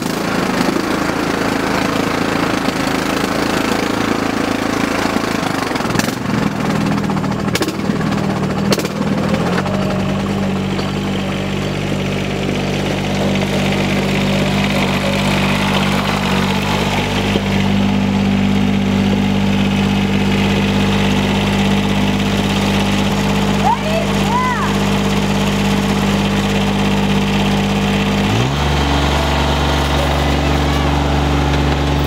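Riding lawn mower engines running outdoors. From about ten seconds in, one engine holds a steady note, which drops lower and grows heavier near the end as the tractor pulls up close.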